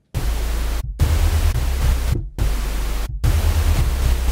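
Retrologue software synthesizer playing a draft kick-drum patch: a low hum from two sine-wave oscillators under pink-noise hiss. Four notes of roughly a second each, every one sustaining at full level until the key is released and then cutting off sharply. The sound has too much sustain to work as a kick drum.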